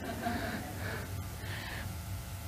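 A quiet lull between spoken phrases: faint room sound with soft breath-like noises and a low murmur, much quieter than the speech around it.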